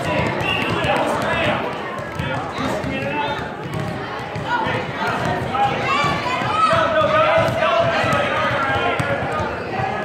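A basketball dribbled on a gym floor, bouncing in repeated thuds, under a steady mix of people's voices.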